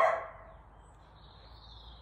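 A dog barking: one short, sharp bark right at the start, then only faint wind rumble.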